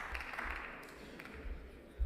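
Faint room noise of a large plenary hall: a low rumble and soft background noise, with a light knock near the end.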